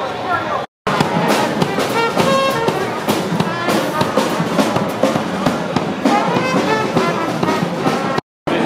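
Brief crowd chatter, then from about a second in a small jazz band plays: trumpet and trombone over upright bass and a drum kit, with sharp drum and cymbal hits. Voices of people around carry on under the music.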